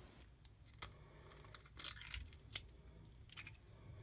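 Faint kitchen handling: a few light clicks and a short scrape as an egg is cracked and emptied into a stainless steel mixing bowl.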